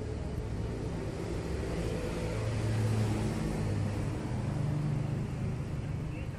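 Low rumbling background noise with a faint hum, a little louder in the middle.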